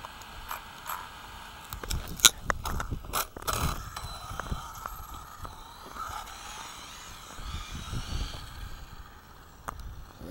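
Plastic clicks and knocks as an RC buggy is handled on asphalt, a dense run of them about two seconds in. Then the buggy drives off, its motor whining faintly and rising and falling with the throttle over tyre and road rumble, heard from a camera riding on the car.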